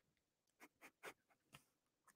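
Near silence: room tone with a few faint ticks.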